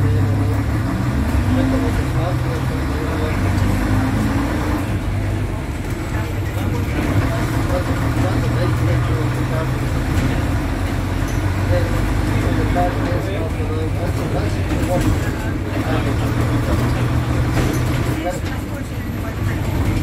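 Engine of a vintage bus running as it drives, heard from inside the passenger saloon as a steady low hum, its pitch rising in the first few seconds as it picks up speed.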